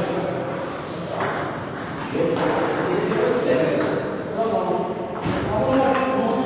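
Table tennis balls ticking off bats and tables: a scattering of sharp single hits, coming closer together near the end as a rally gets going.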